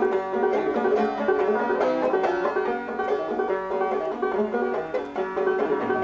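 Banjo picked in a quick, steady stream of plucked notes: an instrumental passage of a folk song with no singing.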